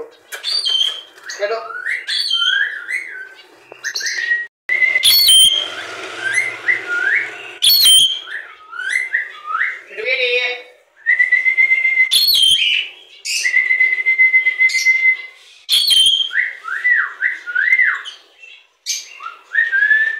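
Caged pet parrots whistling and screeching. Quick runs of short rising whistled notes and two long held whistles are broken by several sharp screeches.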